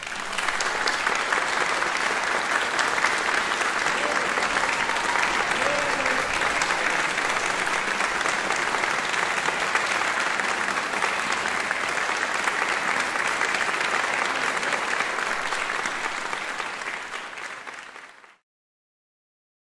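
Audience applauding steadily, fading out near the end.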